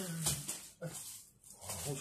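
A young man's voice making short wordless vocal noises, three bursts of grunting, squealing exclamation with breathy noise, comic and animal-like rather than words.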